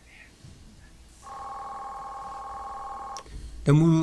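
A telephone ring tone: one steady, buzzing ring of about two seconds, starting about a second in.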